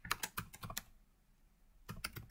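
Computer keyboard keys clicking as a word is typed: a quick run of keystrokes in the first second, then a couple more near the end.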